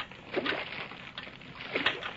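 Radio sound effect of oars splashing and water sloshing as a whaleboat is rowed hard, heard on a 1937 radio transcription recording.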